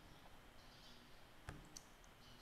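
Two computer mouse clicks, about a quarter of a second apart near the end, over near silence.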